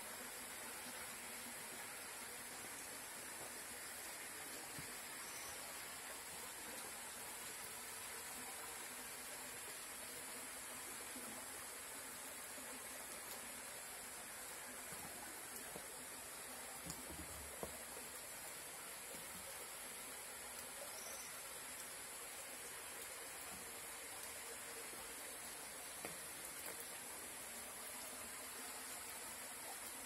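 Faint outdoor ambience: a steady high insect drone over a soft hiss, with a few faint knocks about halfway through and again later.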